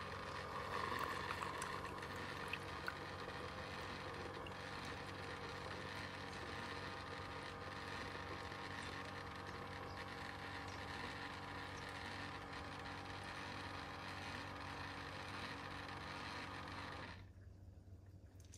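Keurig K-Duo coffee maker running steadily through its brew-over-ice K-cup cycle, a continuous machine hum and hiss, which cuts off about a second before the end as the brew finishes.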